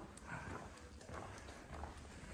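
Faint footsteps: a person walking with a handheld camera, soft irregular steps on a hard floor.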